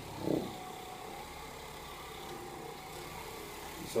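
Electric car buffer running steadily with its soft pad pressed against a person's lower back: a steady motor hum. A brief voice-like sound just after the start.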